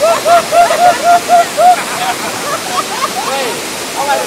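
Rushing water of a river cascade over rocks, with high-pitched human voices shouting over it: a quick run of short repeated calls, about four a second, then scattered shouts.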